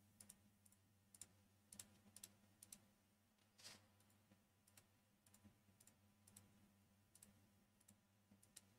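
Faint computer mouse clicks, about a dozen at irregular spacing, as squares are filled one at a time with a bucket fill tool, over a faint steady low hum.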